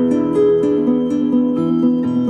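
Instrumental background music: a plucked acoustic guitar picking a steady run of notes.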